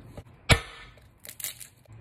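A head of garlic broken apart by hand: one sharp crack about half a second in as the bulb splits, then a few faint crackles of its papery skin.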